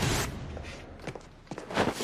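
Running footsteps on a concrete parking deck, a few sharp steps in the second half, after a short rush of noise at the start.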